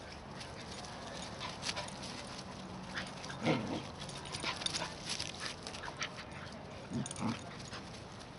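An adult dog and two puppies play-fighting, with a few short dog yips or whimpers: one about halfway through and two close together near the end, over light scuffling and rustling.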